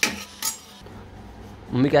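A metal ladle knocking twice against the rim of a pressure cooker pot, two sharp clinks about half a second apart.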